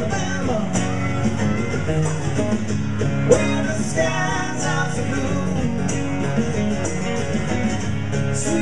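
Live band playing a rock song on acoustic and acoustic-electric guitars with drums, the drum hits keeping a steady beat.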